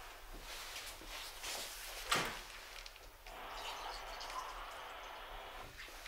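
Soft handling noises as a picture frame is picked up and held, with one sharp knock about two seconds in.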